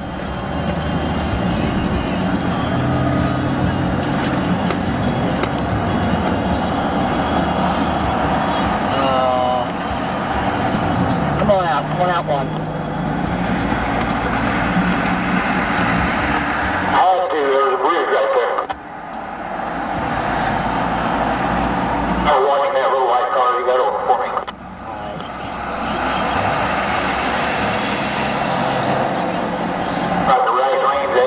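Steady road and engine noise inside a vehicle cabin at highway speed. Brief indistinct voices come in a few times, mostly in the second half.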